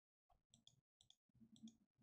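Near silence with a few faint, soft clicks of a computer mouse as the video is sought back to replay a verse.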